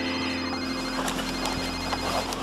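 A telephone ringing: a high trilling ring in two bursts of about a second each, with a short pause between them.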